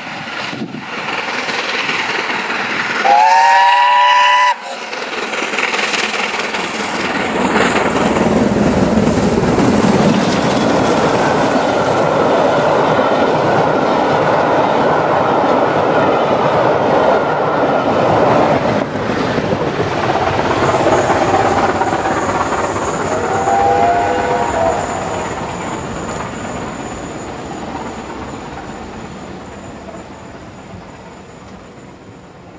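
BR Standard Class 7 'Britannia' steam locomotive 70013 Oliver Cromwell sounding its whistle, a loud blast of several pitches about three seconds in that stops abruptly. Then the locomotive and its coaches pass close by at speed with wheel clickety-clack and rumble, a fainter whistle about 24 seconds in, and the sound fades away as the train leaves.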